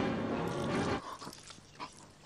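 A man snoring, a steady snore that breaks off about a second in, leaving only faint sounds.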